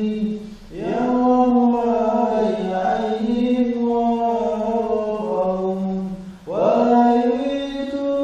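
Chanted vocal music: long, held sung phrases, with a new phrase sliding up into place about a second in and again near the end.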